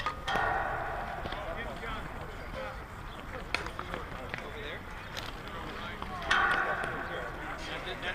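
Players' voices carrying across an open softball field: two loud, drawn-out shouts about a second long, one near the start and one about six seconds in, over scattered distant chatter, with a couple of sharp knocks in between.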